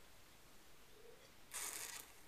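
A man quietly sipping red wine from a glass, with a short breathy hiss of air from his mouth or nose near the end.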